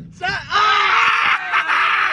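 A young man screaming: one long, loud scream starting about half a second in, its pitch sliding slowly down.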